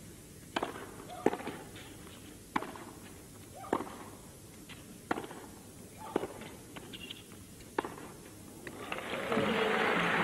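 Tennis rally: a ball struck back and forth with rackets, about seven sharp hits spaced roughly a second or more apart. Crowd applause swells near the end as the point is won.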